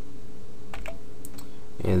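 A few short keystrokes on a computer keyboard, close together about a second in, over a steady low hum.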